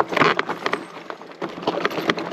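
Fat-tyre e-bike rolling down a rocky trail: its 4-inch tyres crunch over loose stones, and the bike gives off irregular clicks and knocks.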